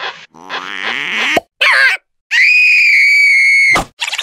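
A cartoon larva character's wordless voice: a rising strained grunt, a short sliding squeal, then one long high-pitched scream held for about a second and a half that cuts off near the end.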